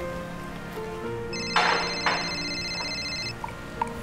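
Mobile phone ringing: a high electronic ring that starts about a second in and lasts about two seconds, with two short rasps in it, over soft background music.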